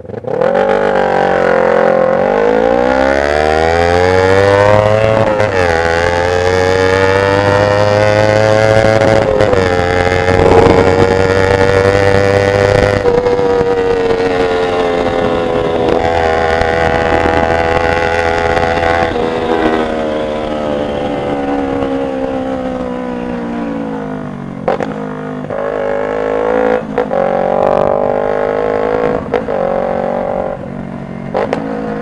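Kawasaki Ninja 250R's parallel-twin engine pulling away from a standstill. Its pitch climbs and drops back at each upshift, about three times, then holds at a steady cruise. Near the end it eases off and climbs again as the bike speeds back up.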